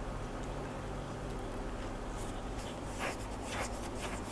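Faint rustling of a crocheted yarn piece being handled and shifted on a tabletop, with a couple of slightly louder soft rustles about three seconds in, over a steady low background hum.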